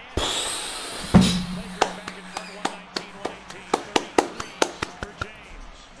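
Basketball game broadcast audio from the arena: crowd noise at first, then a loud hit about a second in, followed by a low held note and a run of sharp, evenly spaced knocks, about three a second, that stop about a second before the end.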